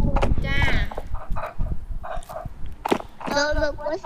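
Voices of a woman and children talking over an online video call, broken up by scattered sharp clicks and knocks, over a steady low rumble.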